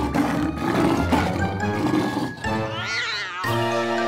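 Cartoon lion roar sound effect lasting about two seconds, over background music. A short pitched sound that rises and falls follows near the end.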